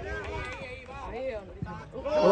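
Several voices calling out, with a single short knock about a second and a half in.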